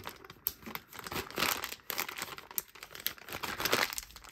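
Small plastic zip-lock bags crinkling irregularly as they are handled and squeezed down to push the air out.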